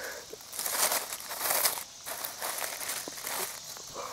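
Footsteps crunching and rustling through dry leaf litter, in irregular bursts.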